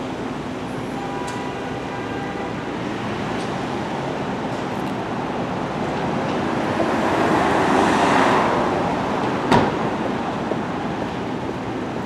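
Street traffic noise: a steady din of passing cars, swelling as a vehicle goes by about eight seconds in, with one sharp knock shortly after.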